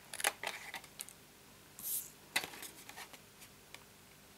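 Small scissors snipping through cardstock in a series of short, sharp cuts, with a brief rustle of the card being handled about two seconds in.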